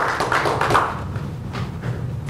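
Audience applause at the close of a talk, dying away about a second in, leaving a few scattered claps over a low steady room hum.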